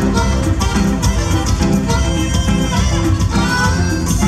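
Live band playing huapango dance music at full volume with a steady, even beat.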